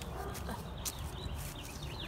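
Outdoor ambience with a steady low rumble of wind on the phone microphone and some handling rustle. A few faint, short, high chirps come in over the second second.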